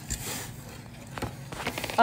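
Metal spoon stirring thick dal in a stainless-steel saucepan: faint scraping with a few light clicks of the spoon against the pot.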